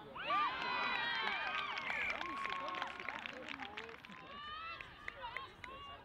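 Several voices shouting and calling at once across a rugby pitch. They start suddenly just after the start, are loudest for about three seconds, then thin out to scattered single calls.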